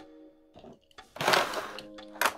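Clear plastic blister tray of a Hot Wheels five-pack crackling as a die-cast car is handled and lifted out of it, in a short burst about a second in, over faint background music.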